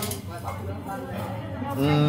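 Background music, then near the end a long, appreciative 'mm' from someone tasting food.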